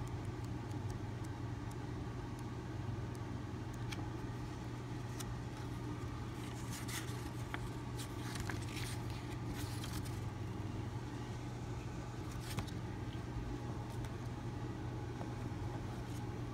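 Pages of a thin storybook being flipped and turned by hand: a few soft, brief paper rustles over a steady low hum.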